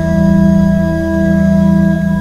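Church pipe organ holding a loud, sustained chord in the hymn introduction, just before the singing begins.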